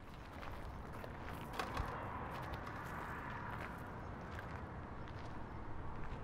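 Footsteps on a gravel path, faint and spaced under a second apart, over a steady low outdoor rumble.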